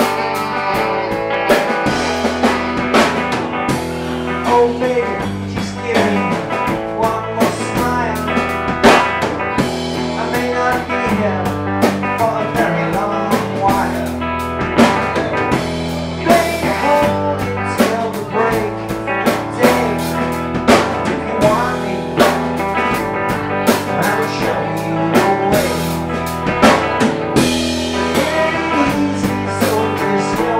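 Live blues-rock band playing: drum kit with snare and rimshot hits, electric bass, electric guitar and a wavering melodic lead line over them.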